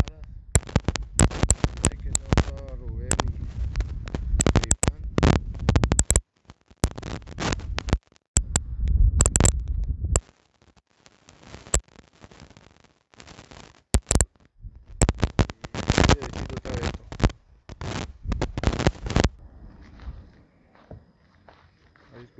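Wind buffeting the microphone in irregular gusts of rumbling noise with crackles, dropping away for a few seconds around the middle and again near the end.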